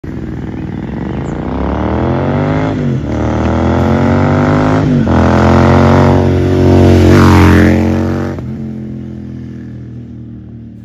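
Royal Enfield Continental GT 650's parallel-twin engine accelerating hard through the gears, its exhaust note rising and dropping at two upshifts about three and five seconds in. It is loudest as it passes about seven seconds in, then falls in pitch and fades away.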